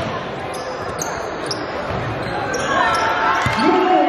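Basketball bouncing on a hardwood gym floor several times, with sneaker squeaks and the echoing voices of spectators. Near the end, long held voice-like notes come in.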